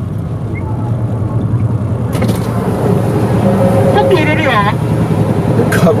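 Motorcycle engine idling while stopped, a steady low rumble that grows a little louder after about two seconds, with a short stretch of speech about four seconds in.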